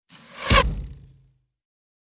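Logo sting sound effect: a whoosh that swells into a deep hit about half a second in, then dies away within a second.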